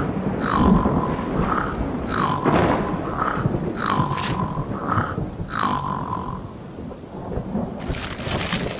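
Cartoon snoring from the sleeping red larva: a short snort, then a longer snore that slides down into a held whistle, repeating about every second and a half, over a steady low rumble.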